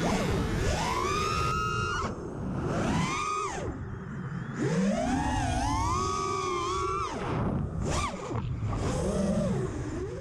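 A DJI Flamewheel 450 quadcopter's brushless motors whining, the pitch rising, holding and falling in several swells as the throttle is worked in flight.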